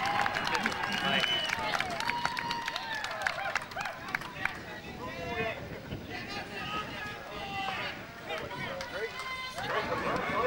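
Indistinct talking from several people around the drivers' stand, with scattered sharp clicks; the talk is a little quieter in the second half.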